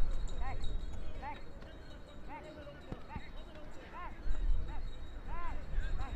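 Short shouts from players and staff across the pitch, one every second or so, over a low wind rumble on the microphone.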